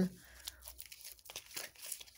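Tarot cards being shuffled and handled by hand: faint, irregular rustling and light card clicks.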